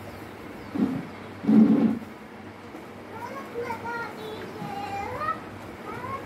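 A high, childlike voice: two short loud sounds near the start, then a run of sing-song, speech-like sounds whose pitch glides up and down.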